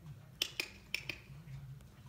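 Four short, sharp clicks in two quick pairs, the pairs about half a second apart.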